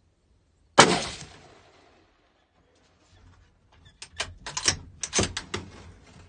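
A single gunshot about a second in, its report dying away over about a second; the shooter says afterwards that he hit the hog. An irregular run of quick clicks and knocks follows over the last two seconds.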